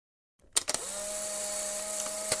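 A small electric motor whirring steadily with a high hiss and a steady hum, starting with a couple of clicks about half a second in.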